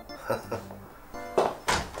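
Background music with held sustained tones, over which come a few sharp hand claps about one and a half seconds in, a call to summon a servant.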